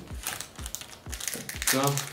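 Foil trading-card booster pack wrapper crinkling as it is handled and torn open at the top, with a brief bit of voice near the end.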